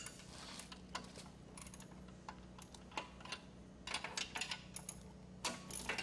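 A ratchet wrench and socket clicking in irregular short runs while the pump's mounting bolts are tightened down, with single metallic ticks in between. A faint steady low hum runs underneath.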